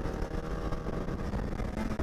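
Polaris SKS 700 snowmobile's two-stroke engine running steadily while under way on a trail.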